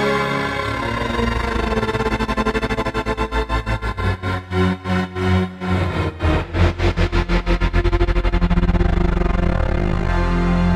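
A massive string band playing a five-octave unison riff, chopped into stuttering pulses by a tremolo plugin set up as a gate. The chopping eases in about two seconds in, slows to about two deep cuts a second around the middle, speeds up again, then smooths out near the end.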